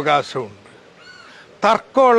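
A man speaking, broken by a short pause. In the pause a single bird call sounds once, faint and brief, before the speech resumes.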